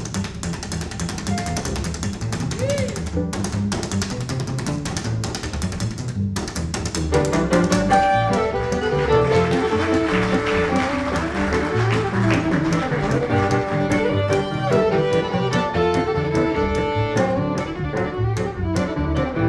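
Upright double bass solo played slap-style, with rapid percussive clicking strokes over a walking bass line. About seven seconds in, the full western-swing trio comes back in, with fiddle taking the lead over archtop guitar and bass.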